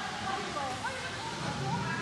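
Indistinct voices, faint and echoing in a large warehouse hall, over a steady noisy background.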